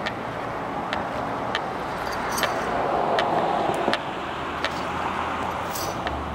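Footsteps on asphalt, about one every two-thirds of a second, over a steady hum of road traffic that swells briefly in the middle.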